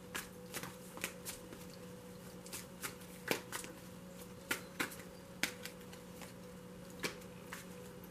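A deck of tarot cards being shuffled by hand, giving a string of irregular sharp card snaps, the loudest a little past three seconds in.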